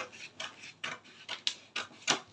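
Scissors snipping through pattern paper, a run of short crisp cuts about two a second.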